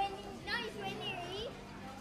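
Speech: a voice saying "nice" in a high pitch that rises and falls, over a steady low hum.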